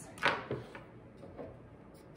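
Faint handling sounds: a few light knocks as a kitchen knife is set down and a plastic dehydrator tray is lifted off its stack.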